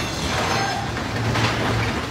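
Steady rumbling noise of earthquake shaking, with a low hum that comes and goes.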